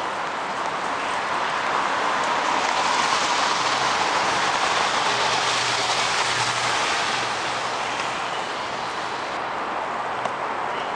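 Steady street traffic noise that swells as a box truck drives past close by, its low engine hum and tyre noise rising to a peak around the middle and then fading back to the general traffic hiss.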